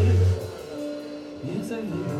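Live rock band music: a loud held bass note cuts off about a third of a second in, leaving quieter sustained tones with the singer's voice.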